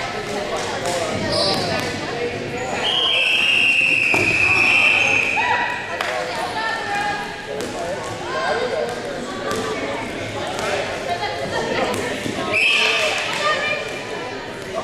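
Rubber dodgeballs bouncing and thudding on a hardwood gym floor amid players' voices, with a shrill, steady whistle blast lasting about three seconds starting around 3 s in and a shorter one near the end, typical of a referee's whistle.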